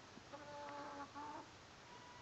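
Chicken giving a two-part call: a held, steady-pitched note just under a second long, a brief break, then a shorter note.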